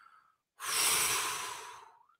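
A person's long, deep sigh: a loud breathy exhale that starts about half a second in, lasts well over a second and fades out.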